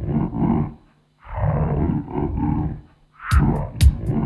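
Experimental noise-rock passage: about one-second bursts of rough, pitched, roar-like sound separated by short silences, with sharp drum hits coming in near the end.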